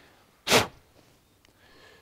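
A short, sharp puff of breath blown through a small brass carburettor fuel filter tube to clear crud from it, about half a second in, followed by a fainter breath near the end.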